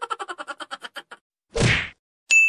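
Edited-in logo sound effects: a run of quick clicks that slow down and stop, then a short whoosh near the end.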